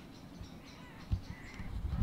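Faint crow cawing, with a low thump about a second in.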